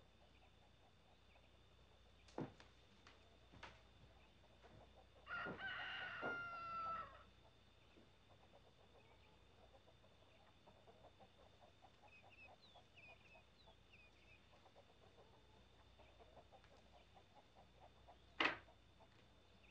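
A rooster crows once, a drawn-out call of about two seconds that dips slightly in pitch at the end. It comes after two sharp knocks, and faint high bird chirps follow a few seconds later over near silence.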